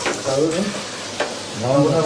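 Steady hiss of disinfectant spraying from the wand of a backpack pressure sprayer, with a voice speaking over it twice and two sharp clicks.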